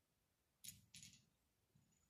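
Two faint sharp clicks, about a third of a second apart, against near silence: a neodymium-magnet plumb bob tapping onto a stone taken for a meteorite as the magnet pulls to it.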